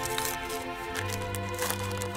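Background music with steady held notes, under faint crinkling of wrapping paper being torn off a gift.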